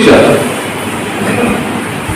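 A man's word through a microphone trailing off, then a steady rumbling background noise during a pause in his speech.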